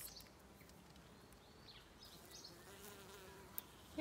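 Faint buzzing of bees and bumblebees foraging at open wild rose flowers, with one buzz swelling and fading a little past halfway through.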